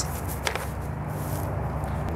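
A sword and scabbard being handled: one sharp click about half a second in, then a soft high swish, over a steady low background hum.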